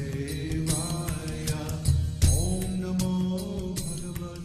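Devotional mantra chant music with regular percussion strikes; a long held note comes in about two seconds in.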